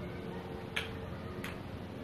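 Two sharp wooden clacks about two-thirds of a second apart: a kendama's wooden ball landing on the wooden toy during tricks.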